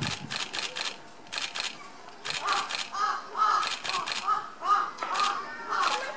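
A crow cawing in a quick run of about nine caws, two to three a second, starting about two seconds in.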